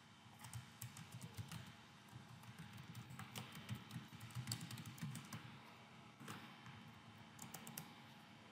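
Faint typing on a computer keyboard: irregular runs of quick key clicks.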